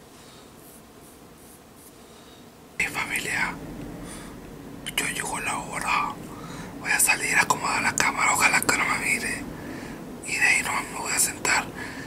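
A man whispering, starting about three seconds in after a quiet stretch.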